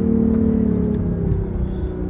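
BMW i8's turbocharged three-cylinder engine heard from inside the cabin, a steady droning hum whose pitch eases gently down as the car rolls at low speed.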